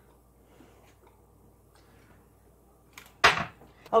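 Faint kitchen handling sounds, then about three seconds in a short, loud crinkle of a plastic zipper bag being picked up.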